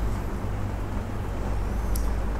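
A steady low rumble, with a short click near the end.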